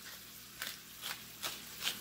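Stainless-steel pepper mill being twisted to grind black pepper, giving a few short, irregular gritty crunches.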